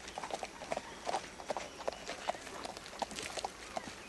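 Horse's hooves clopping on a dirt street in irregular steps, about four knocks a second.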